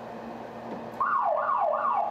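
Earthquake early warning alarm going off in a rail control centre: a loud repeated falling tone, about three sweeps a second, starting about a second in after low room hum.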